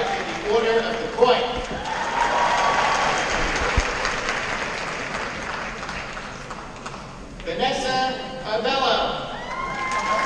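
Audience applauding in a large, reverberant hall; the clapping swells about a second in and fades out by around seven seconds. A voice speaks at the start and again near the end.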